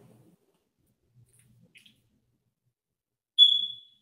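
A single high electronic beep near the end, starting sharply and dying away over about half a second.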